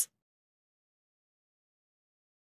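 Near silence: dead digital silence after the tail of a spoken word cuts off at the very start.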